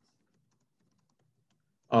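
Near silence with a few faint clicks, then a man's voice begins just before the end.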